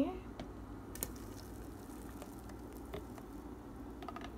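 Thick blended green smoothie pouring slowly from a blender cup into a plastic pitcher, faint and wet, with a few soft ticks of the cup against the pitcher.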